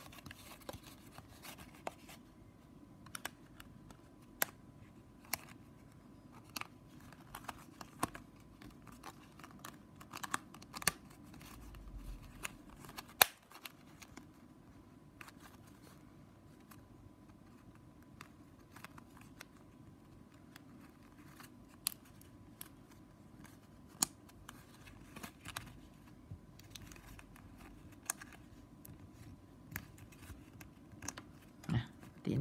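Stiff plastic strapping band being bent and tucked under the woven strips by hand: quiet, irregular clicks, ticks and scrapes of plastic on plastic, with one sharper snap about 13 seconds in.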